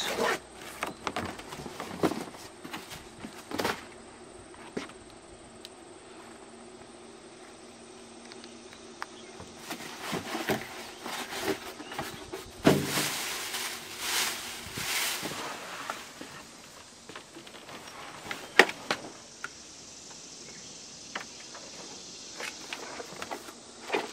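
Cardboard shipping box being opened and unpacked: tape slit, cardboard flaps and styrofoam packing handled, and plastic wrap rustling. Scattered knocks and scrapes, busiest in the middle of the stretch.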